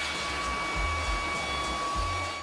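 Handheld leaf blower running at a steady speed, blasting air: a steady rush with a high, even fan whine.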